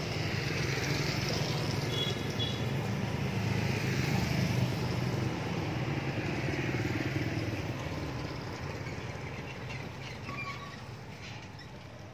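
A motorbike engine running on the street, a steady hum that holds for several seconds and then fades away near the end.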